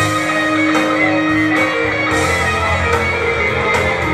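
Live band music: an instrumental passage with guitar between sung lines of a rock song, opening with a long held note.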